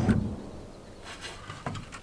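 Knocking and handling of a cordless drill with a hole saw against the top of a plastic water tank. A loud clatter fades over about half a second, and a faint knock follows near the end.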